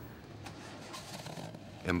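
Faint steady low rumble of a car engine running.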